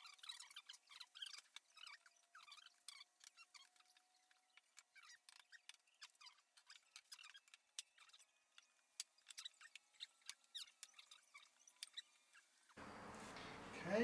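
Near silence, with faint scattered clicks and thin squeaks from wooden boards being handled and fitted together.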